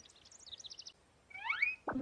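Faint bird-like chirping in a cartoon soundtrack: a quick run of short high chirps, then a few whistled slides rising and falling, with a soft knock near the end.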